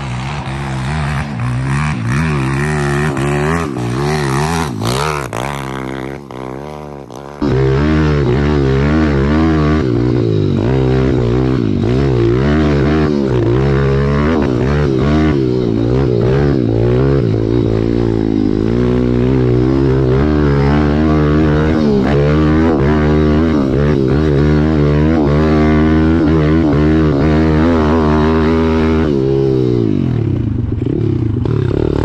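Pit bike's single-cylinder engine revving up and down, heard from a distance at first as the rider floors it up a hill. About seven seconds in it becomes suddenly louder and close up, rising and falling with the throttle as the bike rides the trail.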